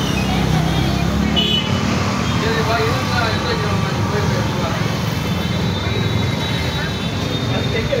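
Busy street ambience: indistinct voices of people talking mixed with a steady rumble of passing traffic.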